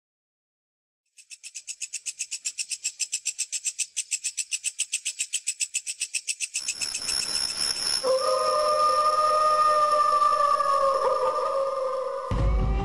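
Eerie intro sound design. About a second in, a rapid, even high-pitched pulsing starts. At about six and a half seconds a steady hiss takes over, and a second later a held, whistle-like tone with two pitches joins it.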